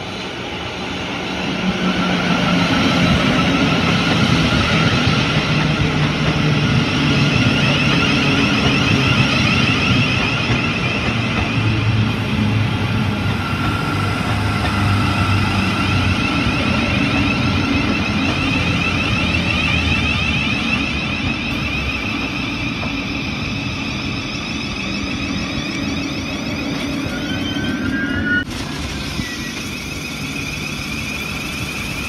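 Thameslink Class 700 electric multiple unit running into the station and slowing down. Its motor whine falls in pitch as it brakes, over the rumble of wheels on the rails, and the sound eases off near the end as it comes almost to a stop.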